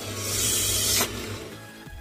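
Automatic banknote counting machine pulling a single genuine 100,000-rupiah note through its rollers: a loud, hissing whir that cuts off suddenly about a second in. The note goes through without being rejected; the machine reads it.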